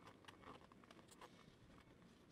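Near silence, with a few faint, short rustles and ticks from an elastic band being worked through a hole in the door pocket trim by hand.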